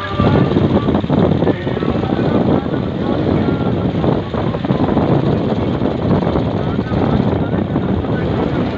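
Wind rushing over the microphone of a moving vehicle, mixed with engine and road noise.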